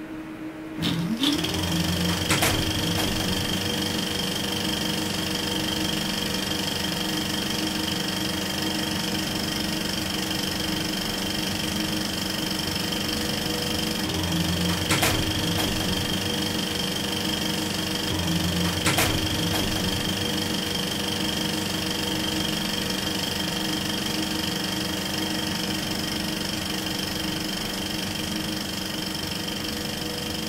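Old film projector running: a steady mechanical whirring with a few sharp clicks.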